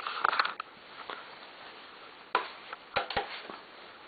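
Quiet handling noise with a few sharp clicks and light knocks, the strongest a little past halfway, then two close together about three seconds in.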